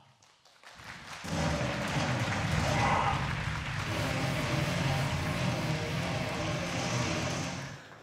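Arena crowd clapping, with music playing over the hall's speakers, starting about a second in after a moment of near silence.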